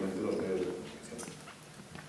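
A man's voice speaking. A drawn-out syllable in the first half second gives way to quieter, halting speech.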